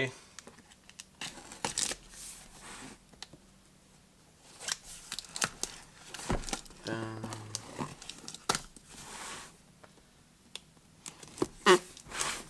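Folding knife slicing the packing tape on a cardboard box, with the cardboard scraping and crinkling in short, scattered bursts.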